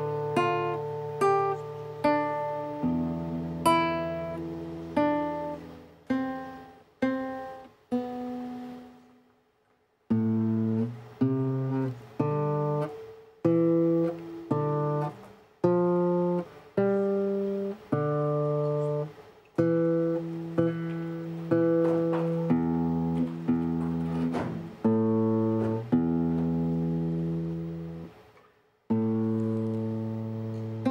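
Solo acoustic guitar played fingerstyle: single plucked melody notes over bass notes, each ringing and dying away. The playing stops for about a second roughly a third of the way in, then carries on.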